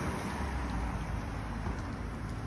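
A car driving away down the street, its engine and tyre noise fading gradually into a steady low outdoor rumble.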